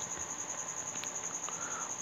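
A high, thin tone pulsing evenly at about fifteen beats a second, a steady trill that carries on unchanged, over faint room noise.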